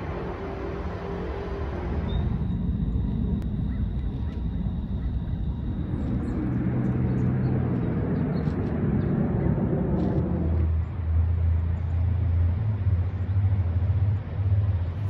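Outdoor ambience carried by a low, steady engine rumble of a nearby motor vehicle, its pitch shifting about six and ten seconds in.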